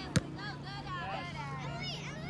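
Faint shouting of players and spectators across a soccer field, with one sharp thump just after the start and a low steady hum underneath.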